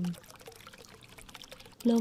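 A calm woman's voice ends a phrase, then a faint trickling-water background plays in the pause, and the voice starts again near the end.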